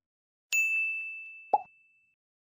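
Subscribe-animation sound effects: a single bright bell-like ding about half a second in that rings out and fades over about a second and a half, then a short pop about a second later.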